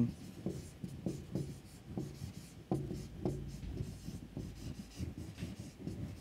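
Marker pen writing on a whiteboard: a run of short, faint strokes as a word is written out letter by letter.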